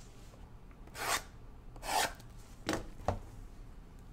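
Plastic shrink wrap being scratched and torn off a cardboard trading-card box by gloved hands, in four short strokes that come closer together towards the end.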